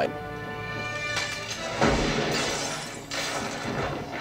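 Film soundtrack: music holding a sustained chord, then about two seconds in a sudden shotgun blast with glass beer bottles shattering.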